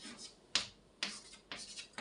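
Chalk on a blackboard: sharp taps and short scratchy strokes as a word is finished and underlined, with one stroke about half a second in, another about a second in, and a quick run of smaller strokes near the end.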